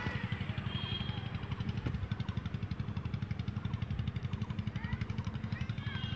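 A machine running in the background: a low, steady rumble with a fast, even pulse.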